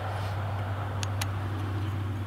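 Two faint, quick clicks about a second in as parts of a Springfield EMP 9mm 1911 pistol are fitted back together by hand, over a steady low hum.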